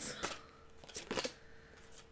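Tarot cards being handled and drawn from the deck: a few short, quiet card flicks and slides, one about a quarter second in and a couple about a second in.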